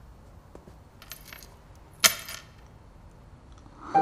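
A shell-and-bead bracelet dropped onto a wooden floor: a faint jingle about a second in, then one sharp clatter with a brief ring about two seconds in.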